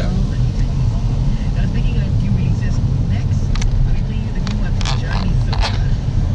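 Car interior noise while driving: a steady low rumble from the engine and tyres, heard inside the cabin, with a few short clicks in the second half.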